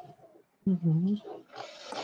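A person's short wordless vocal sound, a brief hum-like 'mm' with a pitch that dips and rises, followed near the end by a soft, breathy hiss.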